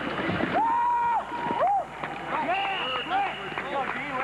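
Several voices shouting and yelling across a football practice field during a scrimmage play, with one long held shout about half a second in and a jumble of overlapping yells in the second half.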